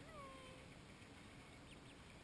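Faint calls from a mallard duck family. One drawn-out call falls in pitch at the start, and a few short high duckling peeps come near the end.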